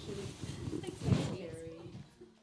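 Speech only: the end of a spoken "thank you", then indistinct voices that fade near the end.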